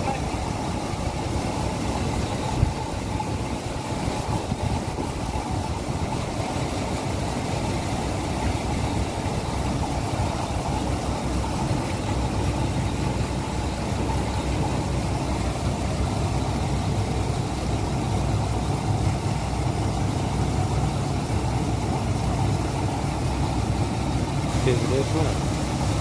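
Harvester's engine and threshing machinery running at a steady drone while seed pours from its unloading spout onto a pile, with a single sharp click about two and a half seconds in.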